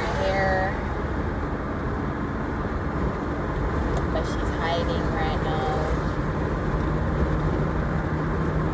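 Steady road and engine noise inside a moving car's cabin. A faint voice is heard briefly at the start and again about five seconds in.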